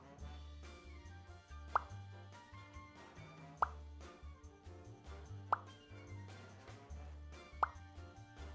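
Light background music with a steady bass line, punctuated four times by a short, quickly rising pop sound about every two seconds.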